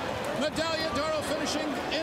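A man's voice: the television race announcer talking, continuing his call of the finish.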